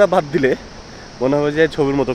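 A man's voice: a short spoken sound, then a drawn-out held vowel, with no clear words.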